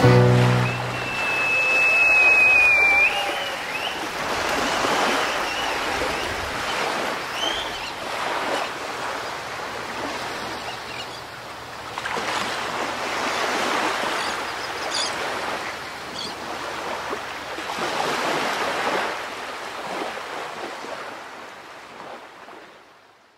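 Sea waves breaking and washing back, swelling every four to five seconds, as the last chord of the music dies away in the first second. A brief high whistling tone sounds about two seconds in, and the waves fade out at the end.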